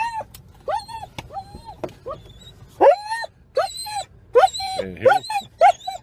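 A German Shepherd whining and yelping in a string of about a dozen short high cries, each rising then falling in pitch, coming faster toward the end. The dog is distressed at realising it has arrived at the vet.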